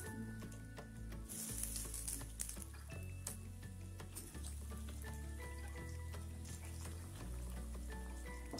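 Breadcrumb-coated lote (Bombay duck) fish fingers deep-frying in hot refined oil in a kadai: a steady sizzle that surges as more pieces are laid into the oil.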